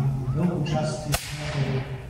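A single black-powder musket shot, one sharp crack about a second in, with a short echoing tail.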